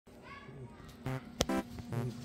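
Cute, playful background music starting up, with a high child-like voice glide near the start and a sharp click about one and a half seconds in.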